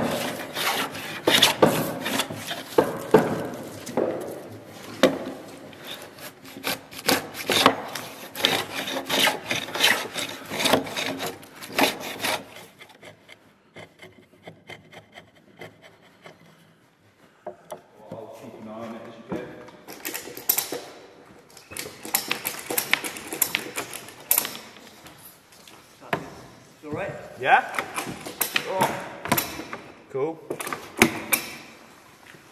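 A chisel paring a green timber tenon, in rapid shaving strokes, to ease a joint that is a little too tight. The strokes run thick for about twelve seconds, go quiet for a few seconds, then come back in shorter runs.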